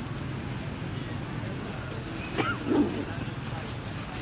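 A short animal call about two and a half seconds in, over a steady low background.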